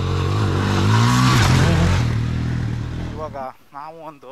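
Motorcycle accelerating past close by on a dirt track. The engine pitch rises and the noise is loudest a little over a second in, then fades and cuts off near the end, where voices take over.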